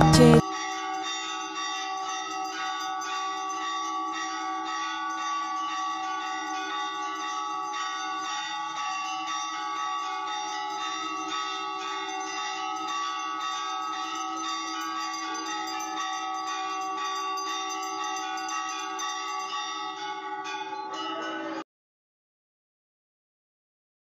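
Temple handbell rung continuously during aarti, a steady metallic ringing that holds for about twenty seconds and cuts off abruptly near the end.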